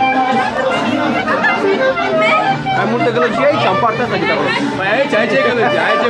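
Many people talking at once, a dense crowd chatter with no one voice standing out, over live band music.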